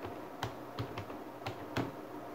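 Computer keyboard keys pressed one by one as a word is typed: about five separate sharp clicks, irregularly spaced, the loudest near the end.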